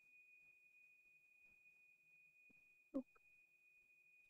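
Near silence under a faint, steady high-pitched tone, with one short sound about three seconds in.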